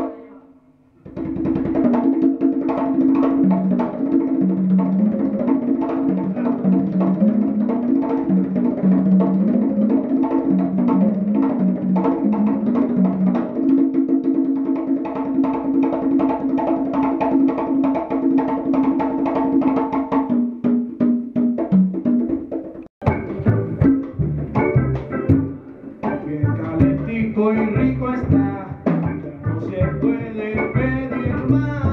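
Live Afro-Cuban jazz: conga drums played over upright bass and electric guitar. The sound drops away briefly at the start. About 23 seconds in it cuts abruptly to a different, fuller passage of the band.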